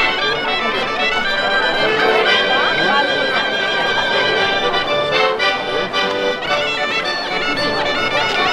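Traditional Quattro Province folk dance music played steadily, with an accordion carrying the tune, amid crowd voices.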